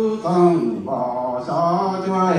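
A man chanting in a slow, melodic voice through a microphone, holding notes and sliding down at the ends of phrases, in the manner of a Hmong funeral chant.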